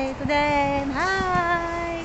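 A woman's voice singing in a playful sing-song way: a held note, then a slide up to a higher note held for about a second.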